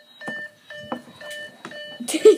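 Electronic game-show answer buzzer pressed again and again: four short beeps, about two a second.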